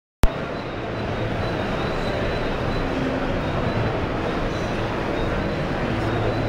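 Steady din of a crowded exhibition hall, many voices blending into a constant murmur, with a sharp click right at the start.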